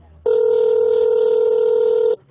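Telephone ringing tone heard on the caller's end of an outgoing call: one steady ring of about two seconds, starting a quarter second in. The call has not yet been answered.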